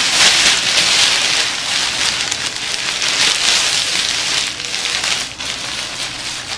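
Thin plastic shower cap crinkling and rustling close to the microphone as it is pulled on and adjusted over the hair. It is loudest in the first couple of seconds, then eases.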